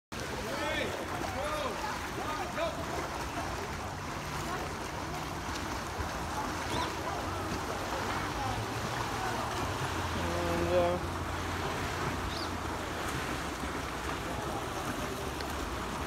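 Outdoor swimming-pool ambience: a steady rush of water with a low hum, and birds chirping in the first few seconds.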